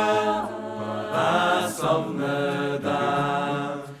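Choir singing in harmony, holding chords that shift every second or so, and dropping away sharply at the end of a phrase.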